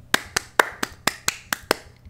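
One person clapping their hands, about eight claps, evenly spaced at about four a second: mock applause.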